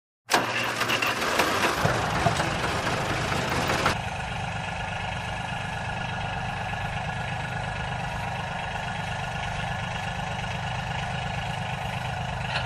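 Small DC electric motors running on a cardboard model combine harvester, a mechanical whine and rattle that starts suddenly. It is louder and rougher for about the first four seconds, then settles into a steady hum.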